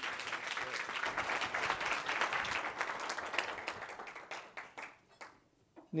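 Audience applauding. The clapping dies away about five seconds in.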